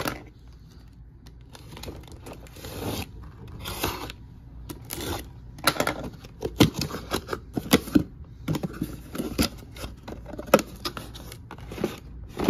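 A cardboard shipping case being opened by hand, with scraping and tearing of cardboard and packing tape. This is followed by irregular clicks and rattles of plastic blister-carded toy cars being handled and flicked through.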